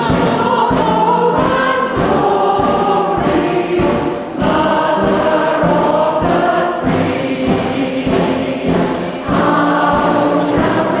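A choir singing a piece together, holding sustained notes.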